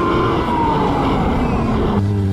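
Motorcycle being ridden, heard from a camera on the bike: a dense rush of wind and road noise with an engine tone that rises briefly, then falls steadily as the revs drop.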